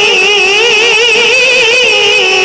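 A woman reciting the Qur'an in the melodic, sung style into a microphone, holding one long note that wavers up and down in quick ornamental turns.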